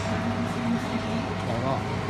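Stainless-steel centrifugal spin dryer with a 370 W electric motor running at speed: a steady low hum with a steady higher tone above it. It spins fast and runs smoothly.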